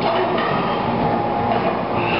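Steady, loud background noise of a busy weightlifting gym, with no distinct clang or drop of the barbell standing out above it.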